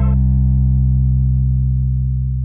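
Final held bass note of a hip-hop beat: a single low, steady note with no drums, slowly fading.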